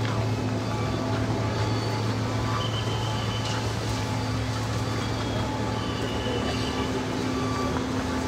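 A steady low engine hum with a constant drone and a background of street noise.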